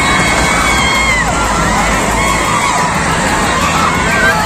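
Roadside crowd cheering and shouting, many high voices overlapping, with one long high call held for about a second and a half near the start.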